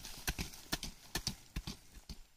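Hand hoe chopping into dry soil: a series of short thuds about two a second, some in quick pairs.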